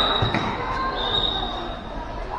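A futsal ball thudding as it is kicked and bounced on a concrete court, with players and spectators calling out in a large echoing covered hall.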